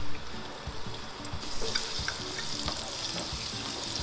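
Minced garlic frying in hot oil in a wok: a steady sizzle that grows louder and brighter about a second and a half in.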